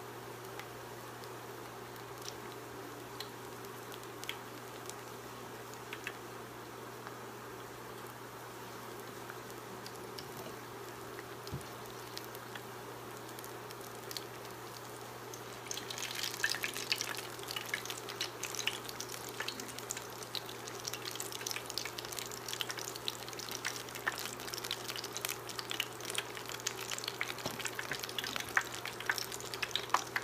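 Battered green tomato slices deep-frying in hot oil, at first a faint steady sizzle with occasional small pops. About halfway through the frying becomes much louder and densely crackly as the slices are turned over with a fork.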